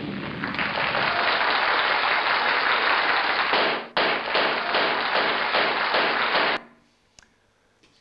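A recorded explosion sound effect played with a slide animation of a mine going off, heard thin over the hall's speakers. It breaks off for an instant about halfway, resumes with a crackle as the next slide appears, then stops abruptly.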